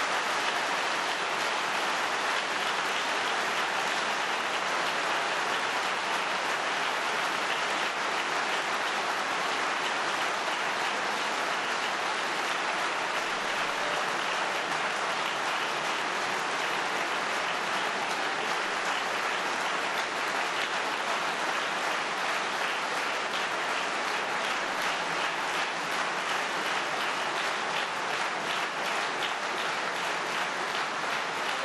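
Large hall audience applauding steadily and at length, a sustained ovation welcoming a guest speaker.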